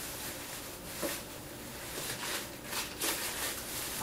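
Faint rustling and a few soft knocks of someone rummaging through craft supplies out of view, over a steady room hiss.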